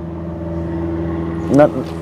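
A steady low mechanical hum with a faint even drone, unchanging throughout. A voice speaks briefly near the end.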